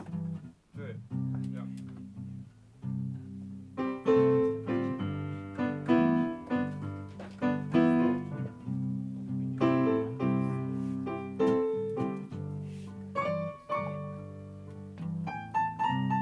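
Digital stage piano playing: low held bass notes at first, then from about four seconds in, fuller repeated chords over the bass.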